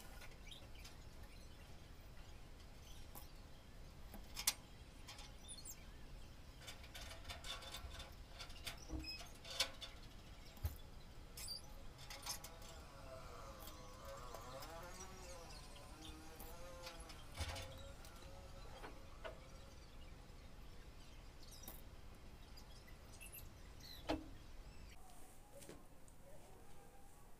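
Quiet handling of fabric and pins as the sequin and velvet beret pieces are pinned together: a few scattered light clicks and knocks over a faint background, with a faint wavering tone in the middle.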